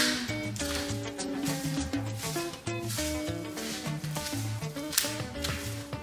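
Background music with a bass line and held melody notes.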